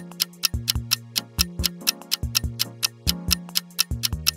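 Countdown timer sound effect: clock-like ticks, even and quick at about five a second, over background music with held low notes, while the quiz answer timer runs.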